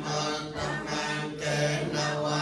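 A group of voices chanting Buddhist verses together in unison on a steady, near-monotone pitch, in short phrases.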